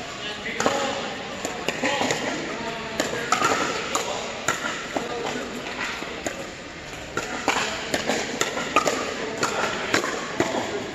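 Pickleball paddles striking the hard plastic ball: sharp pops at irregular intervals, coming from several courts at once and echoing in a large indoor hall, over a steady murmur of voices.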